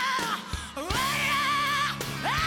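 Live blues-rock band with a high wordless vocal wail: a short cry, then a swoop up about a second in to a long note held with wide vibrato, over sustained band chords.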